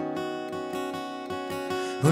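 Acoustic guitar strummed in a steady rhythm, about four to five strokes a second, with chords ringing on and no singing.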